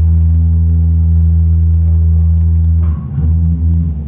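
Live rock band with electric guitar, bass guitar and drums, holding one low chord steadily for about three seconds, then moving on to new notes near the end. The sound is loud and heavy in the low end.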